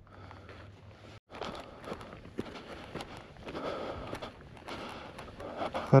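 Footsteps on dry, stony dirt, walking up a slope, irregular and starting about a second in after a sudden break.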